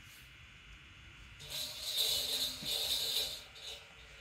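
Numbered draw balls rattling and swishing against each other inside a metal trophy cup as a hand stirs them, for about two seconds from about a second and a half in.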